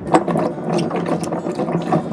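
Fresh ginger roots being scrubbed by hand in a glass bowl of water: a dense, irregular clatter of the knobbly roots knocking and rubbing against each other and the glass, with some sloshing of water.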